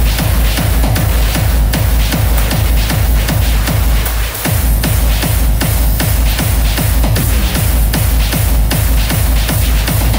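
Hardstyle dance music played loud over a large festival sound system, driven by a steady pounding kick drum whose pitch drops on each beat. The beat briefly thins out a little after four seconds in, then carries on.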